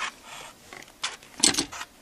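Hands handling yarn on a plastic knitting loom while the loom is shifted and turned: a few short rustling strokes in the second half.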